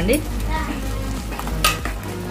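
Metal spatula stirring through a watery curry in a metal pot, scraping against the pot, with a sharp scrape about one and a half seconds in.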